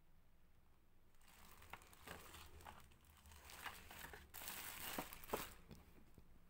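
Clear plastic packaging crinkling as it is handled, with sharp crackles starting about a second in and loudest in the second half.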